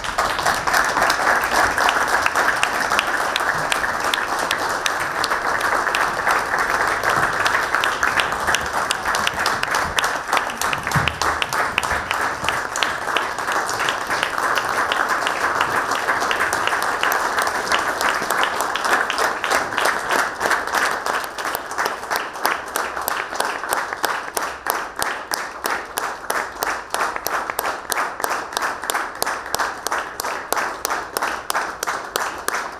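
Sustained applause from a hall full of people clapping. In the second half the clapping gradually falls into a steady, even rhythm.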